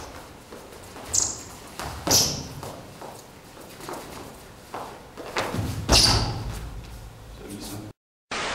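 Indistinct voice sounds and a few sharp footfalls on a wooden hall floor, echoing in the large room; the loudest comes about six seconds in.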